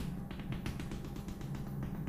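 Chalk tapping on a chalkboard in quick repeated dots as a circle is stippled, several light taps a second.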